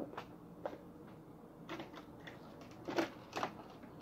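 Faint scattered clicks, taps and rustles of hands handling a sealed cardboard box while trying to get it open.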